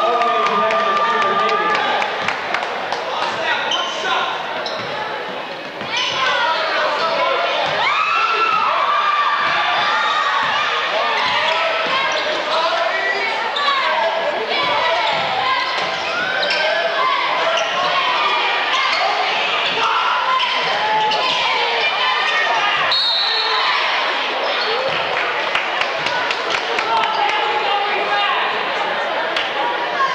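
A basketball bouncing repeatedly on a hardwood gym floor during live play, with shouting voices over it, in a large gymnasium.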